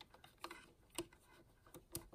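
Near silence with a handful of faint, light ticks: a small slot-head screwdriver turning the oil screw in the centre of an Elna sewing machine's hook drive until it works loose.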